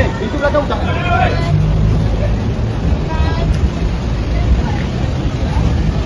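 A vehicle engine idling steadily, under scattered short shouts and calls of men's voices.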